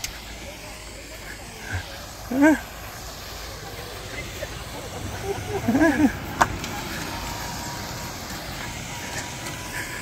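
Low, steady outdoor background rumble on the microphone, with brief faint voices about two and a half and six seconds in and a single sharp click just after the second.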